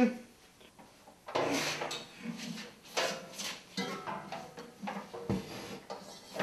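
Knocks, clunks and scraping of a heavy Grizzly dust collector blower unit being lifted and manoeuvred onto a metal wall bracket, starting about a second in and coming at irregular intervals.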